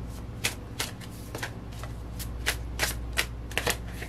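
A deck of tarot cards being shuffled by hand, the cards giving a string of sharp snaps, roughly two or three a second and unevenly spaced.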